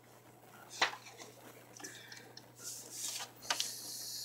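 Paper being handled and laid on a plastic scoring board, with a sharp click about a second in, then several lighter clicks and rustles near the end.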